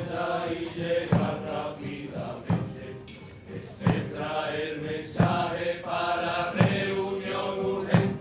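Male carnival chorus chanting together over a slow, steady drum beat, one stroke roughly every second and a half.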